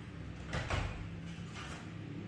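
A brief scraping sound about half a second in, then a second, fainter one just past the middle, over a steady low hum.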